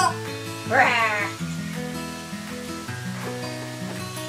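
Rubber chicken dog toy squeezed once about a second in, giving a short squeal that bends up and back down in pitch, over steady background music.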